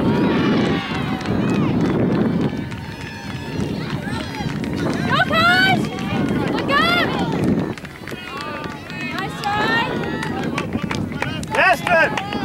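Voices shouting during a soccer match, short high-pitched calls about five and seven seconds in and again near the end. A low rumble fills the first two or three seconds.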